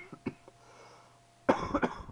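A person coughing: one short cough at the start, then a hard fit of several coughs in quick succession near the end.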